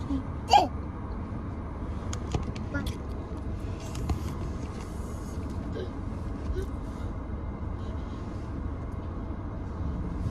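Steady low rumble inside a parked car's cabin. About half a second in, the toddler gives one short, high-pitched yelp, and a few faint clicks and small vocal sounds follow.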